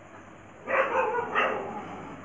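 An animal call, twice in quick succession, the first about half a second long and the second shorter.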